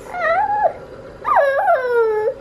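A five-month-old baby squealing: two high-pitched vocal sounds, a short one near the start and a longer one in the second second that rises and falls.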